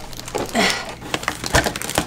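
Two large plastic storage totes, stuck nested together by suction, being twisted and pried apart: irregular plastic creaks, knocks and scrapes, with a short strained grunt about half a second in.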